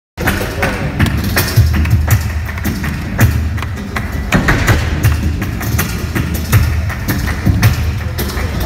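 Live flamenco music: guitar with rhythmic hand-clapping (palmas), many sharp claps and strikes, and repeated low thumps.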